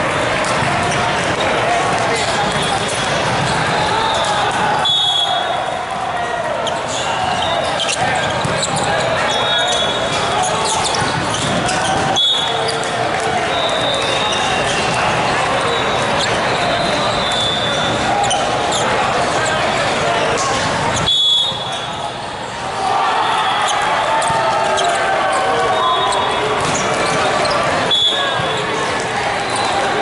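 Echoing din of a large hall full of volleyball courts: many overlapping voices talking and calling out, with sharp ball hits now and then and short high squeaks of court shoes. The loudest hits come about twelve, twenty-one and twenty-eight seconds in.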